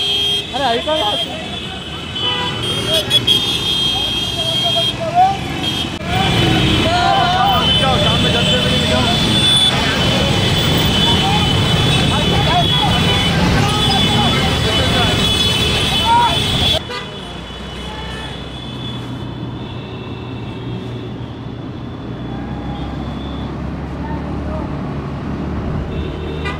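Motor scooters and motorcycles riding in a dense street procession, with horns tooting and people shouting over the traffic noise. About 17 seconds in, the sound drops abruptly to quieter, steady engine and road noise.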